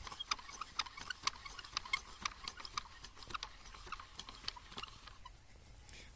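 Bent-wire crank hooks of a homemade wooden rope-twisting machine being turned, ticking irregularly several times a second as three ropes are twisted into one; the ticking stops about five seconds in.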